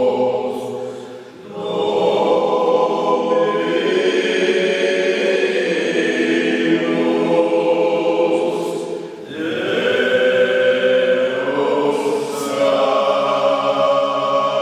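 A small group of men singing Corsican sacred polyphony a cappella, holding sustained chords in close harmony. The singing breaks off briefly for breath about a second in and again about nine seconds in.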